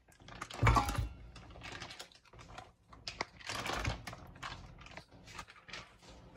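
Raw chicken thigh pieces going into an empty stainless steel pot: a loud thump about a second in, then a string of smaller knocks and clicks against the metal as more pieces go in.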